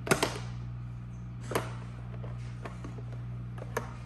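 Toy fishing-game pieces clicking and knocking: two sharp knocks right at the start, another about a second and a half in and one near the end, with a few fainter ticks between.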